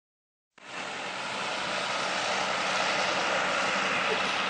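A steady engine drone under a broad hiss, starting about half a second in and growing a little louder.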